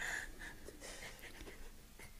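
Faint, stifled laughter: a man's breathy snorts and breaths held back behind a hand over his mouth and nose.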